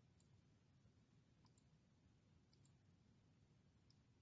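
Near silence with a few faint computer mouse clicks, some in quick pairs like double-clicks.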